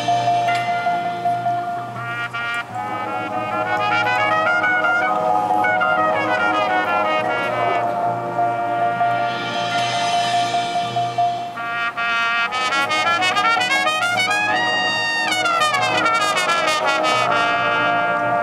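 Marching showband playing its show music, led by trumpets and trombones. It holds chords, then has runs sweeping up and down in the second half.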